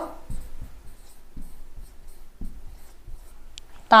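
Marker pen writing on a whiteboard: a series of short, faint strokes and taps.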